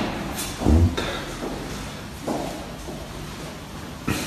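Footsteps on a bare tiled floor: a few soft thuds, the loudest and deepest just under a second in.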